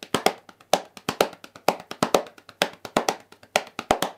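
A swing rhythm tapped out with a sixteenth-note feel rather than triplets: a steady run of sharp, dry taps in a regular pattern of louder and lighter strokes.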